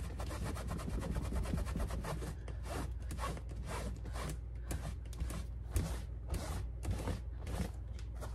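A cleaning wipe rubbed back and forth over a leather purse in a quick, irregular run of scrubbing strokes, working ink marks off the leather.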